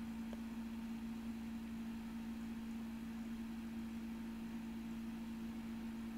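Room tone: a faint, steady low hum over a soft, even hiss, unchanging throughout.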